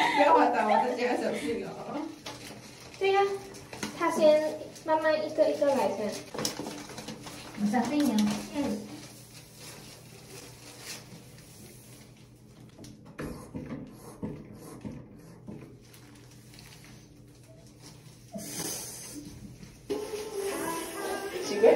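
Young women laughing in several bursts over the first half, with the echo of a small tiled room, then a quieter stretch of light handling sounds.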